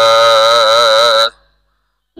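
A man's voice chanting Gurbani in a melodic recitation, holding one long wavering syllable. It stops about one and a half seconds in.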